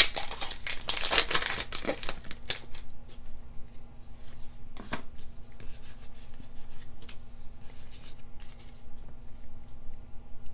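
A foil Pokémon trading card booster pack being torn open and crinkled by hand for the first couple of seconds, followed by softer rustling and clicks of the cards being handled and fanned out, with one sharper click about five seconds in.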